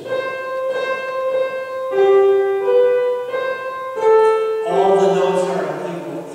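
A short, slow melody on a keyboard instrument: a handful of plain notes, each held for an even length, played as a demonstration of a hymn tune sung in flattened-out even notes. A man's voice comes back in near the end.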